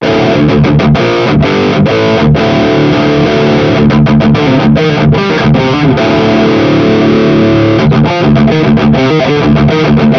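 Electric guitar played through a Flamma FX200 multi-effects unit on its Cali Texas OD amp model: a heavily distorted metal rhythm riff, loud, broken by several brief stops.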